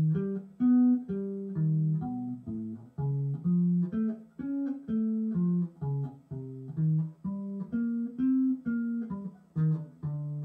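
Unaccompanied electric bass guitar playing arpeggios and chord tones up and down through a chord progression, one plucked note at a time at about two notes a second.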